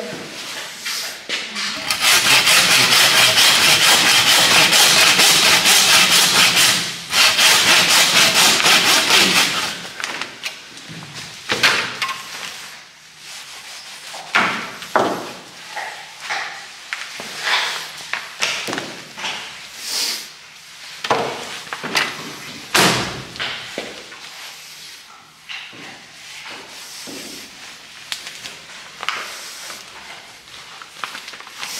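A saw cutting through the carcass of a small wild boar, loud and continuous for about eight seconds with a short break partway through. After it come scattered knocks and scrapes of butchering work.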